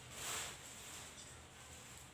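A short, soft exhale near the start, as from a puff on a bamboo cigarette pipe, then faint room noise.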